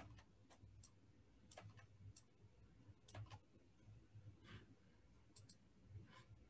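Near silence with faint, irregular clicks of a computer keyboard being typed on, a dozen or so scattered keystrokes, over a low hum.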